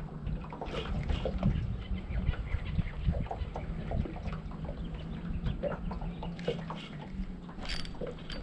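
Wind rumbling on the microphone and small water slaps and knocks against the hull of a small boat, coming irregularly throughout, over a steady low hum.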